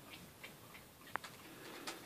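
Puppies playing on a fleece dog bed, making faint scattered ticks and light scuffling clicks, with one short sharp sound about a second in and another near the end.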